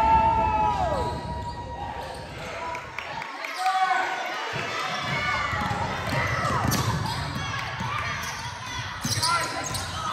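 Basketball game play in a gym: a ball bounced on a hardwood court, short squeaks of sneakers, and voices echoing in the hall. A steady tone dies away in the first second.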